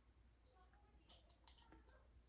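Near silence: room tone with a few faint, sharp clicks in the second half, the strongest about a second and a half in.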